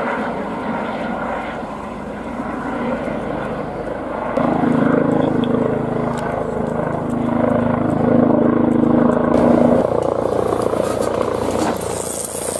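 Helicopter flying past, with steady rotor and engine noise. It grows louder about four seconds in, when its tones come through clearly.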